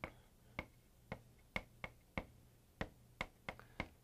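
Chalk tapping and clicking against a chalkboard while writing: about a dozen faint, sharp clicks at irregular intervals.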